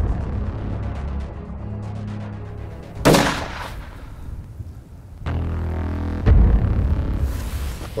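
A single rifle shot about three seconds in, sharp and loud with a short ringing tail, over background music with deep bass hits.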